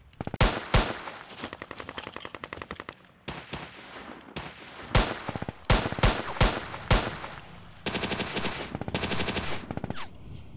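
Gunfire sound effects of a film gunfight: several single loud shots, and between them long rapid strings of automatic fire.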